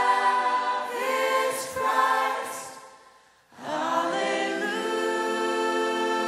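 A group of voices singing a worship song in harmony, holding long notes. The singing dies away about two and a half seconds in, falls silent for a moment, and comes back in strongly about a second later.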